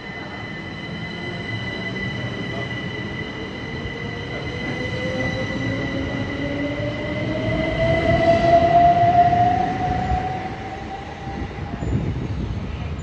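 Electric multiple-unit passenger train pulling out of a station, its traction motors whining in a steadily rising pitch as it picks up speed, over a rumble of wheels on rail and a steady high whine. It is loudest about eight seconds in as the last carriages pass.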